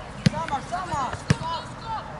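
A football kicked twice, two sharp thuds about a second apart, with young players calling out on the pitch.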